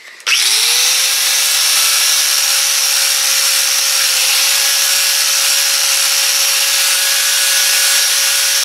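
Angle grinder spinning up about a third of a second in, then grinding steadily against the clutch face of a Mazda Miata flywheel with a steady whine over a harsh rasp. It is resurfacing a burned, heat-discoloured flywheel in place of a machine-shop resurface.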